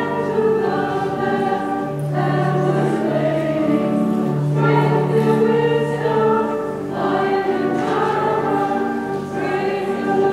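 Church choir singing a hymn at the close of the liturgy, over low accompanying notes that are each held for about a second before changing.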